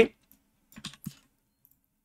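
A quick cluster of four or five computer keyboard keystrokes, a little under a second in.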